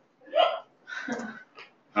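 A few short bursts of laughter, three brief separate outbursts with silent gaps between, following a joke.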